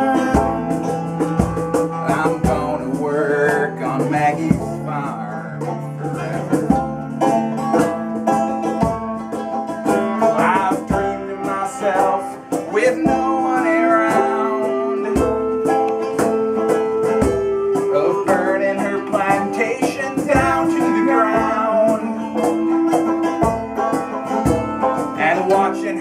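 Acoustic folk band playing an instrumental break: banjo and mandolin picking a steady rhythm over a hand drum, with a clarinet playing long held melody notes in the second half.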